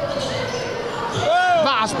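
Basketball being dribbled on a hardwood court, over the steady crowd noise of a large sports hall.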